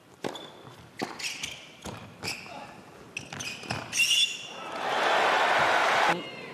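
Tennis ball struck by rackets in a quick exchange of shots, with shoes squeaking on the indoor hard court. About four and a half seconds in, the arena crowd breaks into loud applause and cheering as the point is won.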